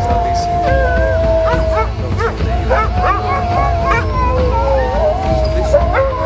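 A team of harnessed sled dogs howling and yipping together: two long held howls, one at the start and one about three seconds in, with many short yips and whines over them.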